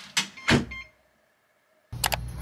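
Digital door lock engaging as the front door shuts: two sharp clunks of the motorized bolt, the second louder, with a brief electronic beep.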